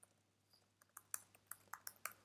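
Faint computer-keyboard keystrokes: after a near-silent first second, a quick run of about eight light clicks as a line of code is typed.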